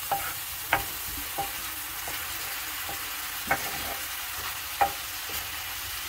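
Chicken liver frying in masala gravy on a tawa griddle, with a steady sizzling hiss and about six short knocks from a wooden spatula against the pan.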